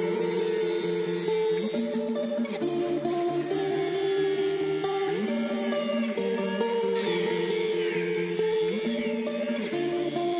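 Background music playing over an electric angle grinder grinding on a steel axle housing, the grinder's high, hissing whine changing pitch a few times as it bites.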